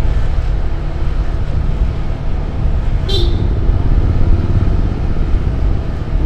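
Motorcycle under way, a steady low engine and wind noise, with one brief higher-pitched sound about three seconds in.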